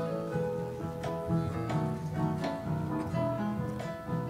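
Instrumental introduction to a choral song: a run of picked-out notes over low bass notes, with no voices yet.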